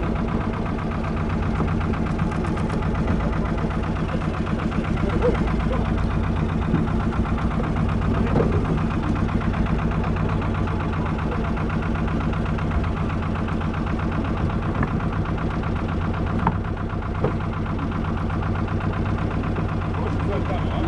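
Rescue boat's engine idling steadily while the boat lies alongside people in the water.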